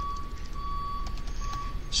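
Soft computer-keyboard typing clicks over a thin, high, steady electronic whine that cuts in and out several times, with a low hum underneath.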